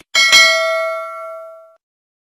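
Notification-bell ding sound effect of a subscribe-button animation: two quick bell strikes that ring on as a clear, several-pitched tone and fade away over about a second and a half.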